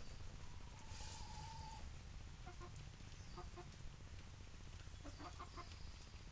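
Hens clucking faintly: one drawn-out call about a second in, then short clucks in pairs and small clusters through the rest, over a low steady background rumble.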